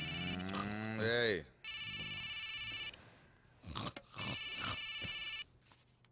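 An electronic phone ring in repeated bursts, each about a second and a quarter long, coming round roughly every two and a half seconds: three rings.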